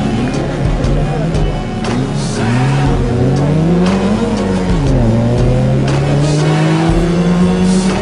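Rally car engine revving hard through a hairpin: the pitch climbs, drops suddenly about four seconds in at a gear change or lift, then climbs slowly again as the car accelerates away. Background music with a steady beat plays over it.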